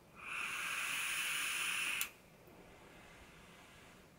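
A draw on a squonk mod's rebuildable dripping atomiser: about two seconds of steady hissing as air is pulled through the bottom airflow past the firing coil, cutting off abruptly, then faint room tone.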